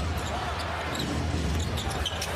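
Arena crowd noise during a live NBA game, with a basketball dribbled on the hardwood court.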